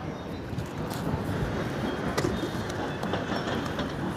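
Footsteps in flip-flops on dusty, gritty ground, a few soft scuffs about a second apart, over a steady low rumbling noise.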